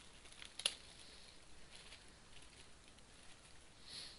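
Quiet room tone with one sharp click a little over half a second in, followed by a few faint, scattered ticks.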